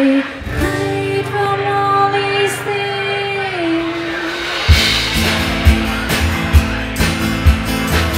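Live band playing a sung pop-rock song: held, sustained notes for the first few seconds, then the full band comes in about halfway, with drums on a steady beat and strummed acoustic guitars.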